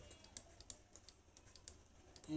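Near silence with a few faint, scattered clicks of a stylus tapping and stroking a pen tablet during handwriting.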